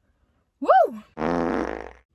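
Edited-in comedy sound effects for a 'brain freeze' gag: a short pitched whoop that rises and falls, then a harsh electronic buzz lasting under a second.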